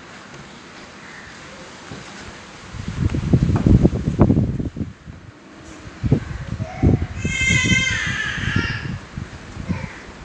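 Hands kneading and rolling bread dough on a wooden table: repeated soft thumps and rubbing strokes, in a spell about three seconds in and again from about six seconds on.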